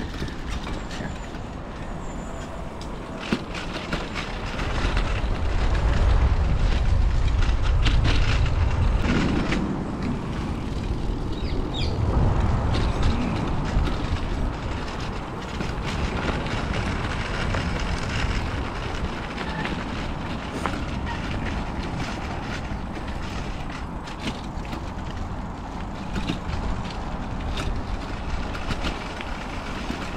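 Bicycle riding noise on a dirt and gravel riverside path: steady tyre rumble with small rattles and clicks, and a heavier low rumble from about five to nine seconds in.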